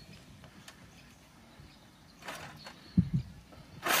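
A metal utensil stirring and scraping food in a cast iron skillet on a portable gas stove, with a short scrape a little after two seconds and a dull knock about three seconds in.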